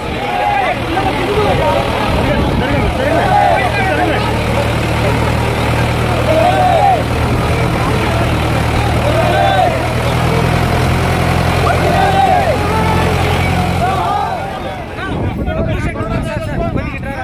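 Tractor diesel engine idling steadily while a crowd's voices and shouts rise and fall over it; the engine sound drops away near the end.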